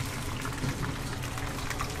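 Battered oyster mushroom strips deep-frying in a pot of hot oil: a steady bubbling sizzle with many small crackles.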